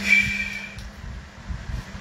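A bottle handled close to the microphone: a short hiss with a thin whistle-like tone that fades over most of a second, then a few soft low bumps near the end.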